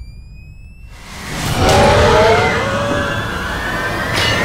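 Horror-trailer sound design. A thin rising tone fades out in the first second over a low rumble. Then a loud rush of noise swells up with screeching, bending tones in it, peaks about two seconds in and stays loud.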